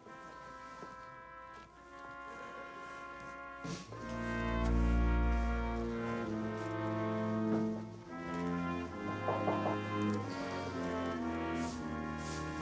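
Brass ensemble music: slow held chords on low brass, soft at first, swelling louder about four seconds in over a deep bass note, then moving on in sustained chords.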